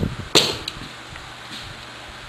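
A single sharp knock about a third of a second in, followed by a couple of faint ticks, over a low workshop background.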